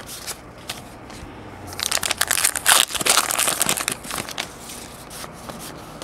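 A stack of paper baseball cards being flipped through by hand, the card stock sliding and rubbing against itself. A louder, denser crinkling rustle runs from about two to four seconds in.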